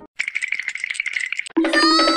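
A rapid, dry rattle sound effect lasting about a second and a half, with a steady buzz running through it. Then a high-pitched cartoon voice cries 'no!'.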